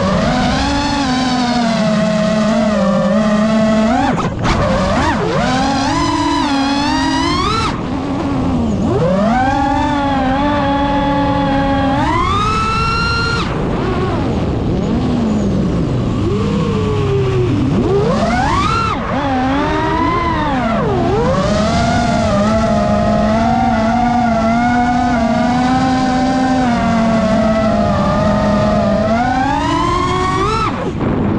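FPV quadcopter's brushless motors whining, the pitch rising and falling constantly with the throttle, with several deep swoops down and back up.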